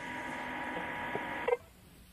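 Steady hiss of an open radio channel with faint steady tones underneath, cut off by a click about one and a half seconds in.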